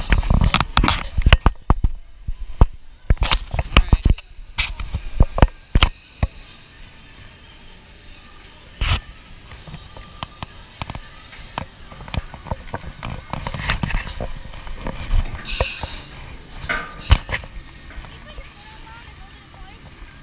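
Footsteps and knocks on the steel grating stairs and railings of a tall fair slide. There is a quick run of sharp knocks during the first six seconds. After that, quieter rustling as a burlap slide sack is spread out at the top of the chute, over background voices.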